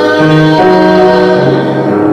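Male vocalist singing held notes into a microphone, backed by a jazz combo with piano and bass.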